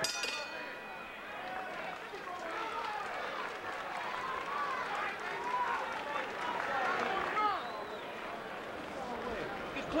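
Boxing ring bell struck once, ringing out and fading over a second or two, marking the end of the round. Then arena crowd noise of many overlapping voices.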